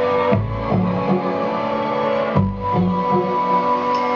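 Live band music: sustained chords over low bass notes that change about every two seconds.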